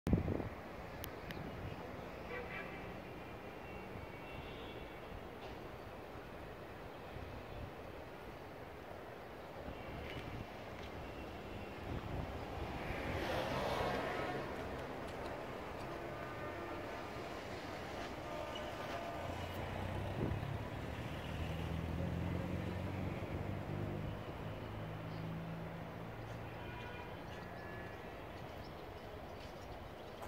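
Background city traffic: a steady hum of vehicles, with one passing louder about halfway through and an engine drone a little later.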